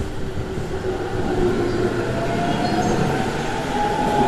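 E231 series 500-subseries electric commuter train pulling out of the station, its IGBT-VVVF inverter and traction motors whining up in pitch as it gathers speed, over a steady rumble of wheels on rail.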